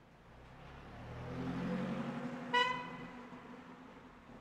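A car's engine and tyres growing louder and fading as it drives along the street, with one short beep of a car horn about two and a half seconds in.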